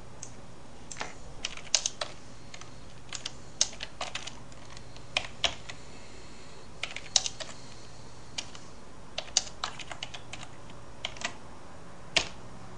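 Computer keyboard keystrokes, irregular sharp clicks singly and in small clusters, as a calculation is typed in.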